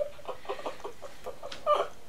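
A girl giggling, muffled behind her hands: a run of short, quick bursts of laughter that gets louder near the end.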